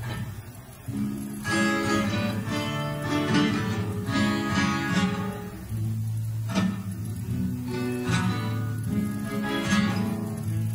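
Solo acoustic guitar playing a song's instrumental introduction, strummed chords and picked notes, starting about a second in.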